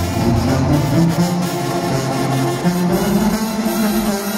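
A banda sinaloense brass band playing live, with trumpets and clarinets over a low bass line that holds notes of about half a second to a second each.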